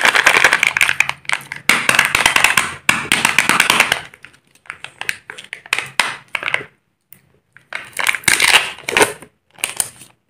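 Foil seal being peeled off a Kinder Joy plastic egg half, crinkling and crackling. It is a dense crackle for the first four seconds, then comes in shorter bursts of crinkling.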